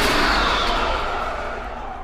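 The ringing tail of a crash-like sound-effect hit, fading out steadily and dying away in its high end first.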